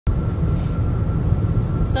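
Steady low rumble inside a vehicle's cabin, with a faint steady high tone over it.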